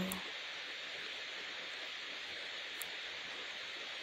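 Steady, even background hiss with nothing else in it apart from one faint tick about three seconds in.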